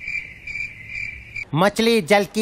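Crickets chirping in an even, pulsing rhythm: the stock 'awkward silence' sound effect. About a second and a half in, it cuts off and a man's voice breaks in loudly.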